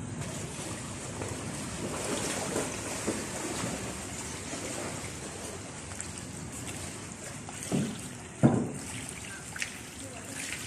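Swimming-pool water trickling and lapping steadily over an overflow edge into a pebble-filled gutter. Two dull thumps come near the end, the louder one about eight and a half seconds in.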